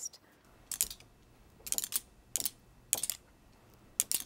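A group tapping pairs of wooden rhythm sticks together in a steady four-beat pattern with a rest on every second beat: ragged clusters of dry clacks a little over half a second apart, with a silent gap in place of each second beat.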